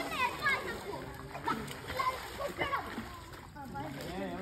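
Water splashing as children swim and kick in a pool, with children's voices calling out several times over it.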